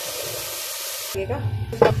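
Chicken curry cooking in a steel pot, a steady sizzling hiss that cuts off abruptly just over a second in. After that comes a low hum and the start of a voice.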